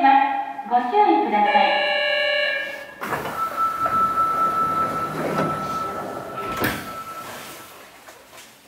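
Subway car's automated station announcement over the car's speakers, with held chime-like tones, for about the first three seconds. Then a sudden rush of noise as the car's sliding doors open, with a steady high tone running for several seconds and a single knock near the end.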